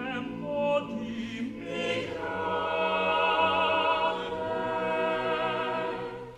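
Unaccompanied choir singing held chords, swelling after about two seconds and easing off as the phrase ends.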